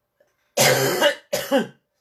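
A woman coughing twice, loudly, the second cough shorter than the first.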